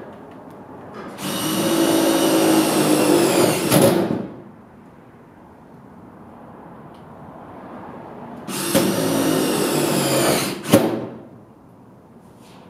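Handheld electric power tool run in two bursts of about three seconds each, its motor whine falling in pitch as it winds down at the end of each burst. A sharp knock comes just before the second burst stops.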